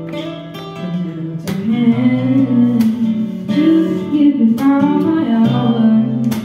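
A song in progress: a strummed acoustic guitar accompaniment, with a strum stroke about every second, and a young female voice singing over it.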